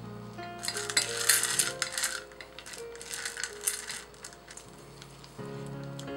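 Dark chocolate callets clattering and clinking against a stainless-steel bowl as a silicone spatula stirs them, loudest in the first few seconds and then dying away, over soft background music.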